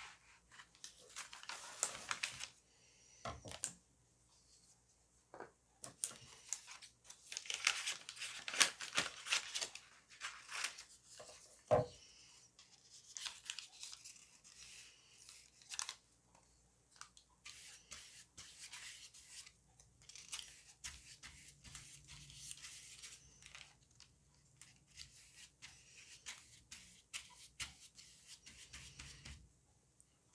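Scissors cutting a sheet of paper and the paper rustling as it is handled, in bursts through the first third, with a sharp click near the middle. After that, a flat brush laden with Mod Podge rubs over the paper collage in light, repeated scratchy strokes.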